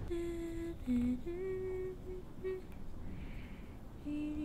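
A woman humming a few short held notes that dip and rise again, trailing off about halfway through.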